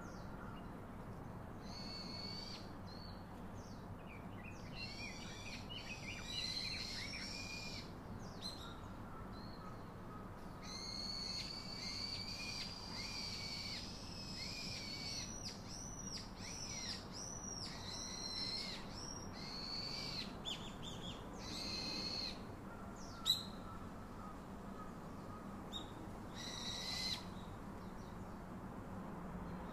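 Forest birds calling over and over, high-pitched whistled calls coming in runs throughout, with one sharp click a few seconds before the end.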